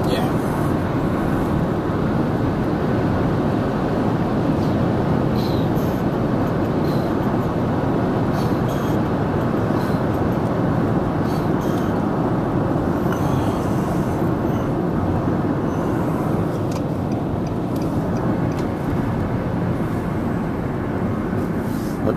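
Steady road noise of a car driving along, heard from inside the cabin: an even rumble of tyres and engine with no changes, and a few faint light ticks.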